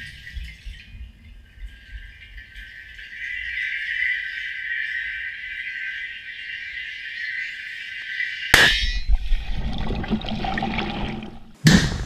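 Explosive charge going off on the floor of an above-ground pool. It gives a steady hiss while bubbles stream up from it, then a sharp bang about eight and a half seconds in, followed by a low churning rumble of water. Near the end there is a second loud bang with water being thrown out of the pool.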